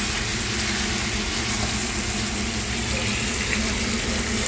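Chicken pieces frying in oil in a wok, a steady sizzle.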